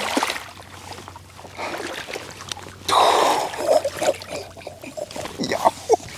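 Shallow water splashing and sloshing around a wading angler's legs as a large speckled trout is grabbed by hand and lifted out, with one louder splash about three seconds in.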